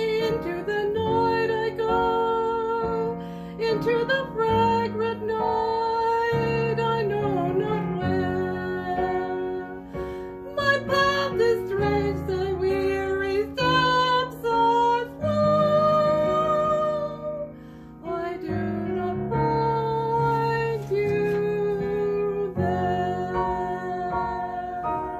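A woman singing a classical art song solo over a piano accompaniment, holding long notes with vibrato over changing chords.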